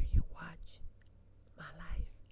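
A woman whispering and murmuring close to a webcam microphone in short bursts, with a loud low thump right at the start.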